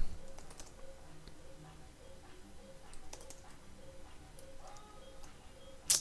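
Typing on a computer keyboard: scattered, soft keystrokes as commands are entered in a terminal, with one sharper keystroke just before the end.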